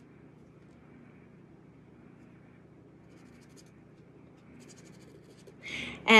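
Faint scratching of an embossing pen's tip drawing lines on watercolor paper, in a few short strokes in the second half.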